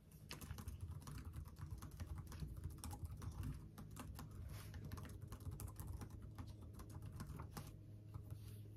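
Fast typing on a computer keyboard: a quick, irregular run of light key clicks.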